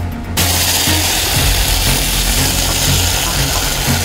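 Food sizzling in a hot pot on a gas stove: a loud, steady hiss that starts suddenly about half a second in. Background music with a bass beat runs underneath.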